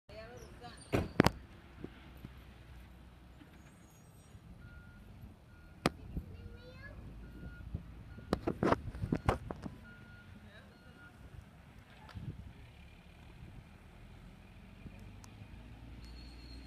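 Garbage truck working down the street: low engine rumble, a reversing alarm beeping steadily for several seconds in the middle, and loud sharp bangs near the start and around the middle.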